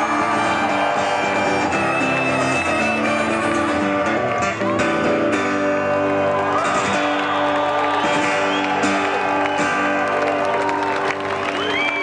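A live rock band plays an instrumental passage between sung lines, led by a guitar, at a steady loud level.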